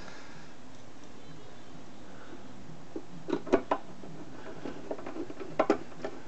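Light clicks and knocks of a hand fitting a fastener to a sheet-metal equipment hood. A steady low room background comes first, then a short cluster of knocks about three and a half seconds in, scattered small ticks, and two more knocks near the end.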